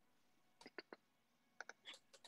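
Faint clicking at a computer over near-silent room tone: three short clicks just after the start of the second half-second, then a small cluster near the end.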